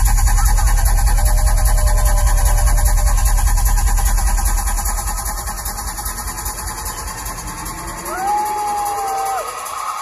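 Dubstep / electronic dance music over a festival sound system, recorded loud from the crowd. A heavy, steady bass note fills the first half and fades out; then a slow rising sweep and a held higher tone come in near the end.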